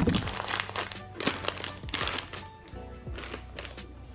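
Foil and plastic snack bags crinkling in irregular rustles as they are pushed and shuffled into a wire basket, thinning out near the end, over background music.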